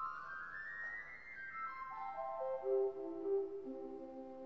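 The Nachthorn, a flute stop on a 1954 Aeolian-Skinner pipe organ, played alone as a single line with a soft, pure tone. A quick run climbs in the first second, then the notes step slowly down, each overlapping the next.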